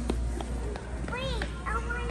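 A young child's short wordless vocal squeal about halfway through, rising then falling in pitch, over a steady low hum and a few light knocks.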